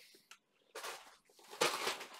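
Plastic packaging crinkling as bagged RC parts are handled: a faint rustle about three-quarters of a second in, then a louder crinkle near the end.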